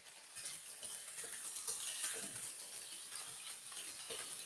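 Chicken pieces frying in oil in a non-stick pan, being browned on the outside: a faint sizzle with a wooden spatula scraping and turning them, starting about a third of a second in.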